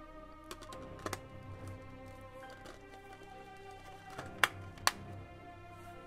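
Background music with held tones, over sharp plastic clicks from a Blu-ray case and disc being handled: a quick double click about a second in, and two louder clicks about four and a half and five seconds in.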